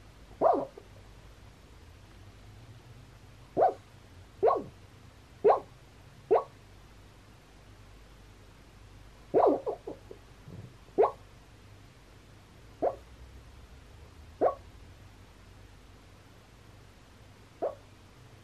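A small white dog lying asleep gives short woofs and yips in its sleep, about a dozen single sounds at uneven gaps of one to three seconds.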